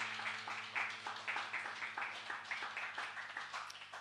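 A small audience clapping at the end of a piece, the applause thinning out toward the end. Underneath, the keyboard's last chord sustains and fades away near the end.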